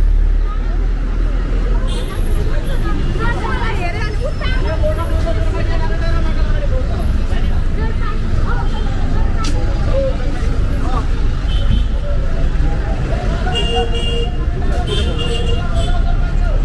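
Busy street ambience: a bus engine running close by with a steady low rumble, under the chatter of many passers-by.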